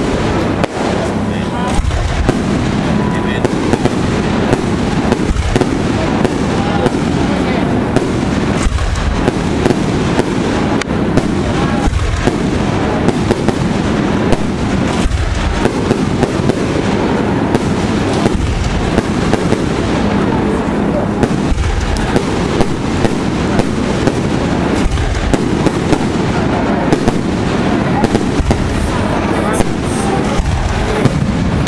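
Aerial fireworks display: a continuous, rapid barrage of bangs and crackling from bursting shells.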